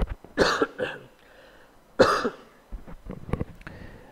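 A man coughing into a microphone: two quick coughs about half a second in, then a single cough about two seconds in, followed by a few faint small clicks.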